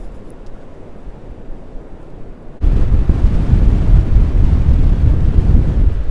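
Faint low wind rumble, then about two and a half seconds in, loud wind buffeting the microphone cuts in over surf washing onto a sandy beach.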